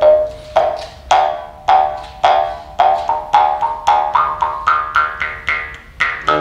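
Bamboo jaw harp plucked at a steady pace, about two twangs a second, each ringing on one drone. Above the drone, mouth-shaped overtones climb step by step in a simple melody and fall back near the end.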